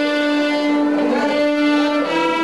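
A group of children's violins playing together: one long held note, with a short moving figure of other notes about halfway through.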